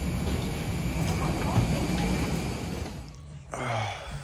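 Steady low rumble of an airliner's boarding door area, with muffled voices in the background. It cuts off about three seconds in, and a brief voice sound follows near the end.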